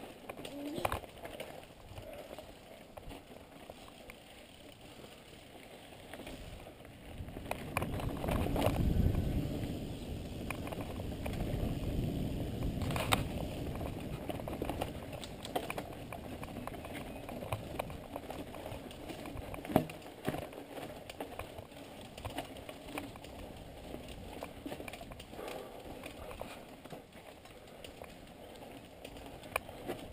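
Mountain bike rolling down a dirt singletrack, heard from a camera on a following bike: tyre and trail rumble with scattered clicks and rattles. The rumble grows louder from about seven seconds in for several seconds.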